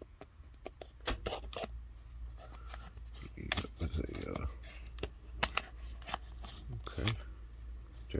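Cardboard Priority Mail mailer being slit open with a knife and handled: a run of sharp clicks, scrapes and rustles of paperboard, busiest about halfway through.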